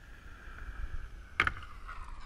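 Inline skate wheels rolling on asphalt, then a single sharp clack about one and a half seconds in as the skates land on the wooden ledge's PVC pipe coping to start a grind.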